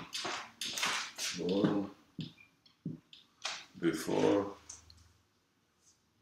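Marker writing on a whiteboard, a run of short strokes in the first second, and a man's voice speaking briefly twice. The voice is the loudest sound.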